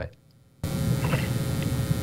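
Electrical mains hum and hiss on the audio line. It cuts in abruptly about half a second in after a moment of near silence, then holds steady and fairly loud.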